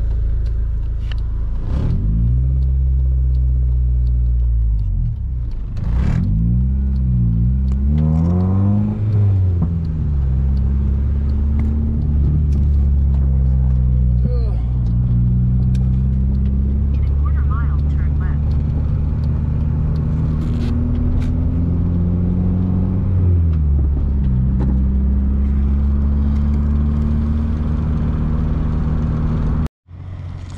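Inside the cabin of a Honda Civic with a swapped H22 four-cylinder VTEC engine, on the move. The revs rise and fall through gear changes in the first several seconds, then hold steady while cruising, with another drop and change in revs near the end.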